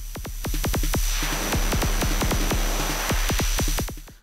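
Make Noise 0-Coast synthesizer playing a fast kick-drum bassline: a quick run of kick hits, several a second, over deep bass with a hissing, gritty top. It cuts off abruptly near the end.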